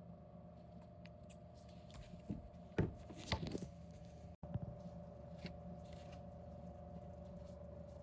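Steady low room hum with a faint constant tone, broken by a few short knocks and clicks about three seconds in, like a handled object. The sound drops out for an instant at an edit near the middle.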